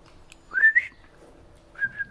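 Two short whistles, each rising in pitch and then holding on a high note, about a second apart.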